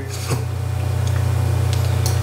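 Steady low electrical hum with a faint hiss over it, and a few soft faint clicks.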